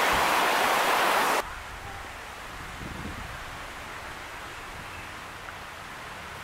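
A stream rushing over rapids, loud and even, cutting off suddenly about a second and a half in. After that only a faint outdoor background with a low rumble of wind on the microphone.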